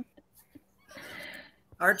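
A person's short, faint breathy laugh about a second in.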